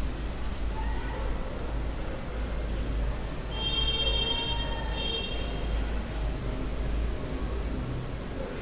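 Steady low hum and hiss of background room noise, with a brief high-pitched call, like an animal's, about three and a half seconds in.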